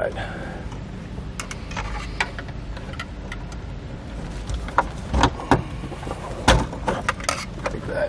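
Plastic clips and trim of a pickup's overhead console clicking and knocking as the tabs are pushed in with a screwdriver and the console is pulled down from the headliner. A run of sharp clicks and knocks comes in the second half.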